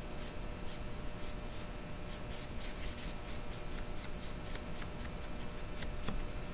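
Paintbrush laying acrylic paint: a quick run of short brush strokes, a few a second, thickest in the second half.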